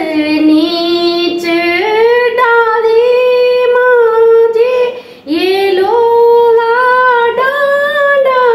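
A woman singing a khuded geet, a Garhwali folk song of longing for the maternal home, without accompaniment. She holds long drawn-out notes, with a short pause for breath about five seconds in.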